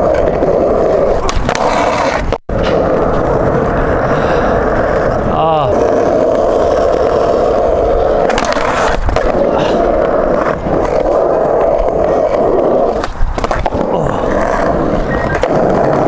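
Skateboard wheels rolling on smooth concrete, a steady rolling rumble, broken by a brief cut to silence about two seconds in. There are sharp knocks of the board about nine seconds in and again, louder, near thirteen seconds.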